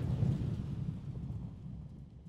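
A low rumbling sound effect for an animated channel logo intro, loudest at the start and fading away over about two seconds.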